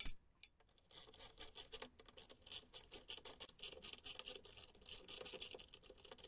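Faint, rapid clicking of a socket ratchet wrench in short runs as a stubborn stainless steel screw is backed out of a sump pump cover.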